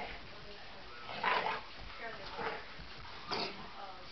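Dogs playing, giving three short vocal sounds; the loudest comes a little over a second in, then two shorter ones.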